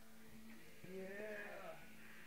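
A quiet, drawn-out wordless vocal sound from a person's voice, about a second long, starting about a second in and bending up and then down in pitch.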